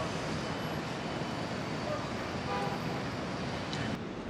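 City street traffic noise: a steady wash of road noise from passing cars.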